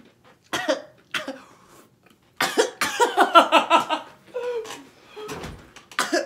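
A person coughing and laughing: two short coughs, then a loud run of rapid laughter lasting about a second and a half, then a few shorter bursts.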